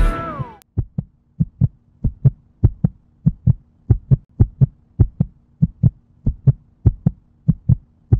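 A heartbeat in a double lub-dub rhythm, about a hundred beats a minute, over a faint steady hum. It begins as a song fades out in the first half second and stops suddenly at the end.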